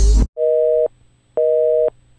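Background music cuts off just after the start, then a telephone busy signal: a steady two-note beep, half a second on and half a second off, sounding twice.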